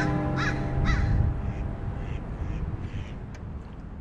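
The last chord of a steel-string acoustic guitar ringing out and fading away over about two seconds. Over it a bird calls repeatedly, about two calls a second, the calls growing fainter after the first second.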